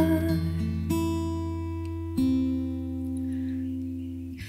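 Acoustic guitar playing three chords, struck about a second apart and each left to ring and fade.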